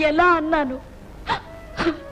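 A woman's voice in a wailing, distressed tone that breaks off under a second in, followed by two short, sharp sobbing breaths.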